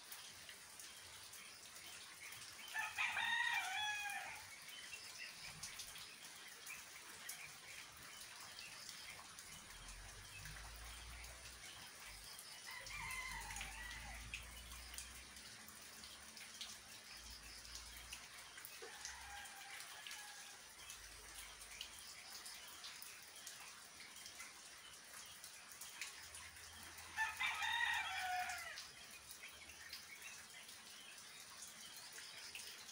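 A rooster crowing twice loudly, a few seconds in and near the end, with two fainter crows in between, over a steady faint hiss of rain.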